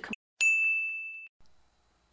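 A single bright 'ding' chime sound effect. It starts about half a second in, holds one high steady tone while fading for nearly a second, then stops abruptly.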